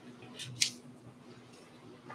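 Two quick, sharp clicks about half a second in, the second the louder, over a steady low hum in a quiet room.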